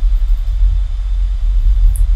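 Steady low hum or rumble of background noise, with nothing else happening.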